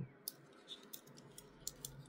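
Light, irregular clicks of two diecast toy cars being handled and shifted between the fingers, a dozen or so small ticks over two seconds.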